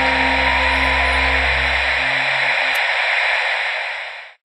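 Synthesized logo-sting sound design: a low sustained drone under a steady hiss-like noise wash. The low drone drops out about halfway through, and the wash then fades away at the end.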